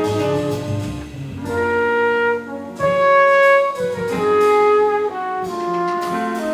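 Live jazz quintet playing: a trumpet carries the melody in long held notes over piano, double bass and drums.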